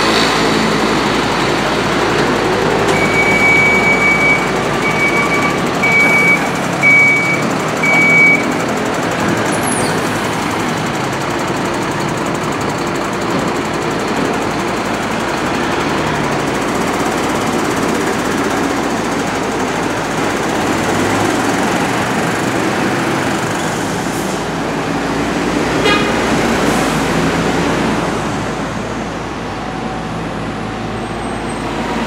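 Fire engine's diesel engine running steadily as the truck manoeuvres, with a series of five short, high beeps about three to eight seconds in.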